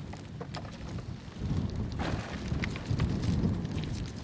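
Wind buffeting the microphone, a low rumble that gets stronger about a second and a half in, with scattered faint clicks.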